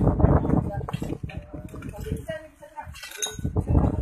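Clinking and scraping of broken bricks, tiles and debris being shifted by hand from a collapsed concrete roof, under voices, with a sharp bright clink about three seconds in.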